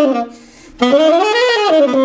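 1967 Selmer Mark VI tenor saxophone, with leather pads and brass resonators, playing a jazz line of quick notes that rise and fall. One phrase ends just after the start; after a breath of about half a second, a new phrase begins.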